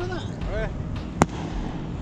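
A single sharp crack a little over a second in, brief and without a tail, over a low steady rumble.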